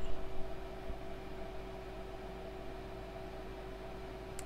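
Steady background hiss and electrical hum with a constant low tone, and a faint knock about a second in.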